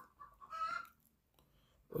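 Faint, brief animal calls in the background during the first second.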